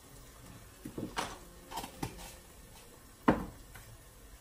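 Small kitchen containers being handled and set down on a counter: a few light knocks and clicks, then one sharp knock a little over three seconds in.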